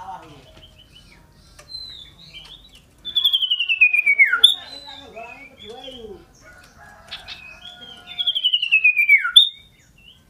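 Common iora singing vigorously: two loud runs of rapid notes sliding down in pitch, about three seconds in and again near the end, with short chirps between them.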